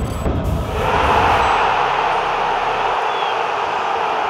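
Logo sting sound effect: a loud, steady rushing noise that starts suddenly, with a deep rumble under it for the first second or so.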